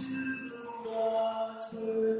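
A man singing long, held notes of a slow song to his own acoustic guitar accompaniment, the sung pitch changing about halfway through and again near the end.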